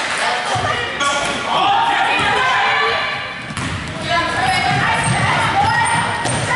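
Basketball dribbling and bouncing on a hardwood gym floor during play, amid shouting voices from players and spectators, echoing in the hall.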